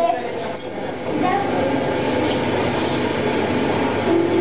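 Indistinct chatter of a group of children, many voices overlapping into a steady murmur in a reverberant room, with a faint high steady tone during the first second.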